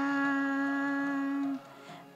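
A woman's voice holding one steady sung note in a slow devotional chant of a Sanskrit verse, then breaking off about a second and a half in.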